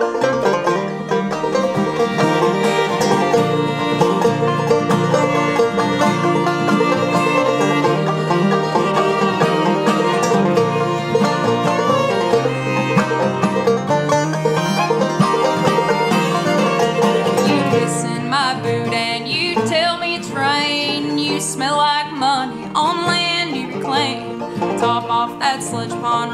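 Bluegrass string trio playing an instrumental intro: five-string banjo, acoustic guitar and fiddle together, with no singing yet.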